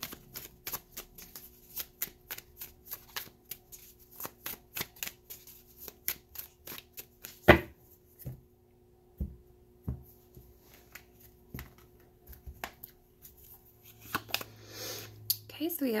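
Tarot cards being shuffled by hand: a quick run of light card slaps and flicks, then a single sharp knock about halfway through. A few softer, scattered taps follow.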